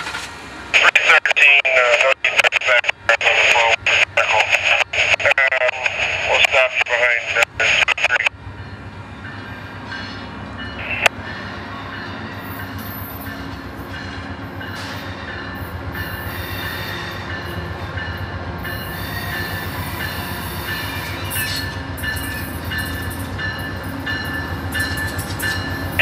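A loud amplified voice for about the first eight seconds, broken by short dropouts and cutting off abruptly. Then an Amtrak GE Genesis diesel locomotive pulling a short passenger train arrives, its engine and wheels a steady rumble that slowly grows louder as it nears.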